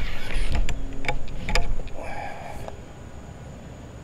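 Golf clubs clinking against one another in a golf bag as a five wood is drawn out: a run of sharp clicks over the first second and a half, over a low rumble.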